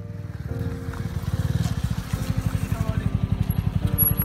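Motorcycle engine approaching, its low exhaust beat pulsing rapidly and evenly and growing louder as it draws close, over soft piano music.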